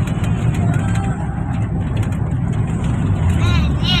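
Steady low rumble of a moving passenger van heard from inside the cabin: engine and road noise, with short bits of voices over it.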